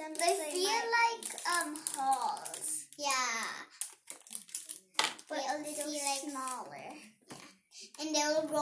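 Young girls' voices talking and exclaiming, with a few short clicks and rustles of hands working slime in plastic trays in the gaps.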